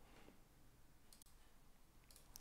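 Near silence: room tone, with one faint click a little past the middle.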